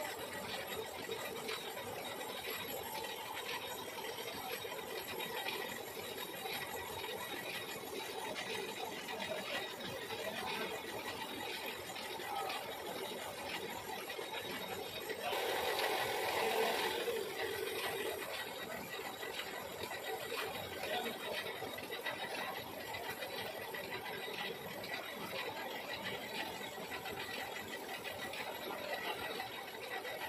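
Metal lathe running steadily with a machine hum, growing louder and harsher for about three seconds a little past halfway.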